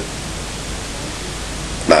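Steady, even hiss of background noise with no other event. A man's speech starts again right at the end.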